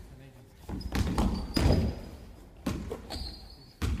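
Basketball game in a large gym: the ball bouncing and several sharp thuds on the wooden court, echoing in the hall, with players' voices mixed in.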